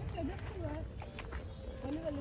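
Faint outdoor ambience: low wind rumble on the microphone, a few light footstep clicks, and faint distant voices in short curved calls.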